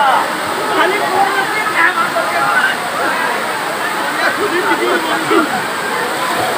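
Small waterfall pouring steadily over a rock ledge into a pool, with people's voices shouting and talking over the rush of water.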